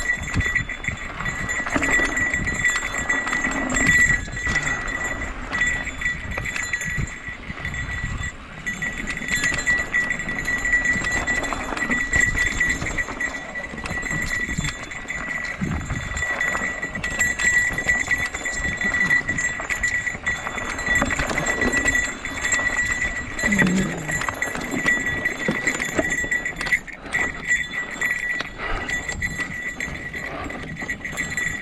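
Mountain bike rolling fast down a rocky dirt singletrack: a continuous clatter and rattle of the bike and tyres over stones, with wind rushing over the mic and a steady high whine throughout.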